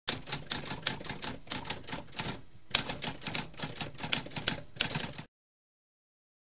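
Typewriter keys clacking in a quick, uneven run, with a brief pause about halfway through, then stopping abruptly about five seconds in.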